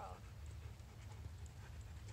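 Faint footsteps of a person and a dog walking on an asphalt driveway, over a low steady rumble.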